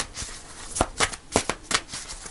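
A deck of tarot cards being shuffled by hand, overhand, with packets of cards slapping onto the deck: a string of sharp, irregular snaps over a soft rustle, most of them in the second half.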